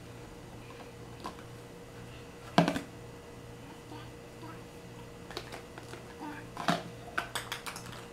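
Plastic toys being handled: a clear plastic bin and a plastic egg knocking and clicking together. One sharp knock about two and a half seconds in, then a quick run of light taps and clicks over the last few seconds.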